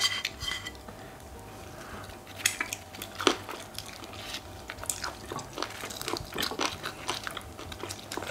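Eating sounds at a table: crispy fried chicken wings being bitten and chewed, with chopsticks clicking against plates and bowls in scattered short knocks.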